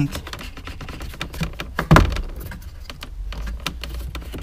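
Plastic gauge-cluster trim piece on a 2001–2005 Honda Civic dashboard being tugged by hand, giving a run of small clicks and knocks with one sharp knock about halfway through. Its rear clips are holding it to the dash.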